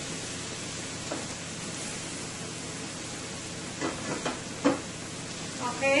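Sliced carrots, onion and garlic sizzling steadily in hot oil in a stainless steel skillet over high heat, sautéing, with a few brief clicks in the second half.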